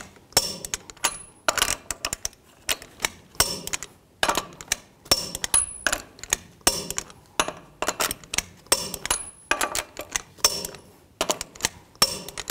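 Torque wrench on a truck's lug nuts, checking them at 140 foot-pounds: a run of sharp metallic clicks, about one or two a second, as the wrench reaches torque on each nut and the socket is moved from nut to nut.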